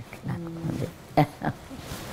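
A woman's voice holding a short, steady hum at one low pitch for just under a second, followed by a couple of brief voice sounds.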